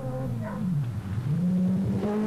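Group B rally car engine under throttle on a gravel stage, played back from period rally footage. Its pitch dips about a second in, then climbs again and holds steady as the car accelerates.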